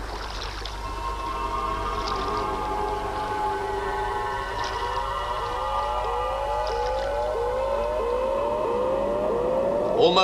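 Eerie electronic soundtrack: a cluster of held tones, joined about halfway through by a short rising glide repeated about twice a second.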